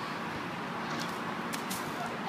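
Steady outdoor background noise with a few faint, sharp clicks in the second half.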